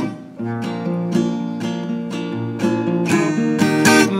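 Acoustic guitar strummed in a steady rhythm, about two strokes a second, the chords ringing on between strokes with no voice over them: the accompaniment held through the pause left for the listener to echo the sung line.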